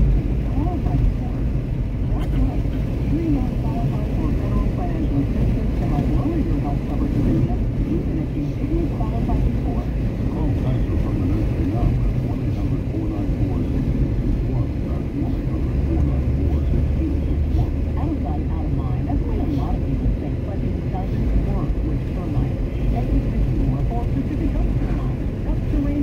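Steady road and engine noise inside a moving car's cabin, with a muffled voice running underneath. A low hum steadies for a few seconds past the middle.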